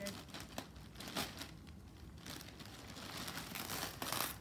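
Several rustles and crinkles of plastic packaging as a poly mailer is opened and a sweater in a clear plastic bag is pulled out.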